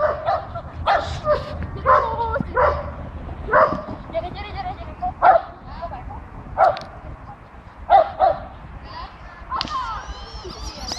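Border terrier barking repeatedly while it runs, short high barks spaced irregularly about once a second.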